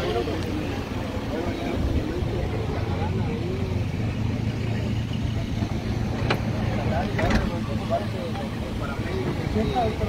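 Steady low hum of an idling vehicle engine under scattered, faint voices of people nearby, with two sharp knocks a second apart past the middle.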